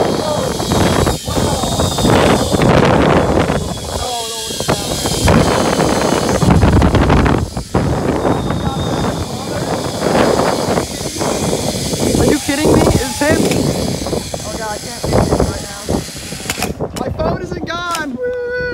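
Loud, steady rush of wind buffeting the microphone during a fast zipline ride, broken by a few short vocal exclamations. Near the end the rushing dies down as the ride slows.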